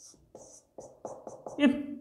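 Marker pen drawing and writing on a whiteboard: a run of short strokes that come quicker toward the end.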